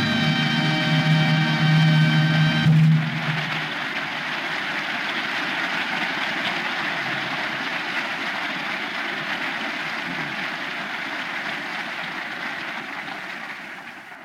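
A studio orchestra holds a closing chord for the first few seconds, ending the act. Then studio audience applause continues steadily and fades out near the end.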